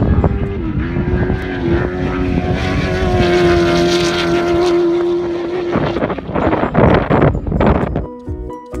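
An off-road race truck's engine running flat out at high, nearly steady revs as it speeds past, the pitch dipping slightly about half a second in. The engine cuts out near the end, leaving a rough rushing noise.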